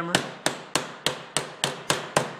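Hammer striking bent sheet-metal tabs, flattening them on a hand-made jersey lock seam: seven sharp blows, about three or four a second, each with a short metallic ring.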